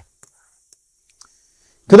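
Near silence in a pause between spoken sentences, broken only by a few faint ticks, until a man's voice starts speaking again at the very end.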